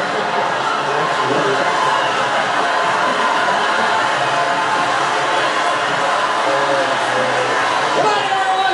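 Soundtrack of a TV game-show clip played through a hall's loudspeakers: voices, studio audience noise and some music.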